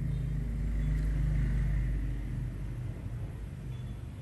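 A low, steady humming rumble that swells about a second in and eases off in the second half.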